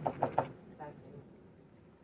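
A few quick knocks in the first half second, then low room noise.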